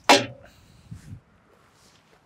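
Faint handling sounds, a soft low knock about a second in, as a removed engine-bay side panel is carried off, over quiet outdoor background.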